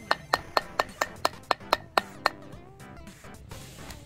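A toy rock hammer tapping a chisel into a hardened sand fossil block in a quick even run of about ten light, slightly ringing strikes, about four a second, which stops a little past halfway.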